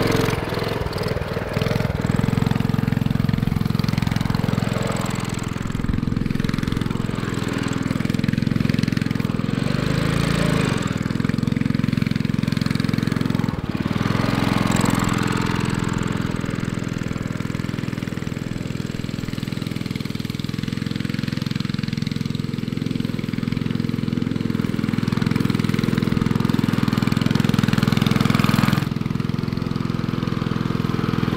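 Single-cylinder 196cc Honda-clone engine of a mini bike running as the bike is ridden, with small rises and falls in speed and a drop in level about a second before the end. It is smoking and blowing oil, and the owners take it to be low on compression, likely from stuck piston rings.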